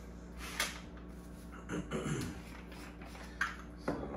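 Faint clicks and light handling of a Wacaco portable espresso maker's plastic and metal parts as it is unscrewed and taken apart, over a low steady room hum.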